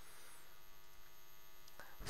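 Faint steady electrical hum with low background hiss, as on a narration microphone between sentences.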